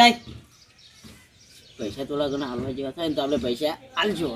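Quiet room tone for the first second and a half, then a man talking in short, quick syllables.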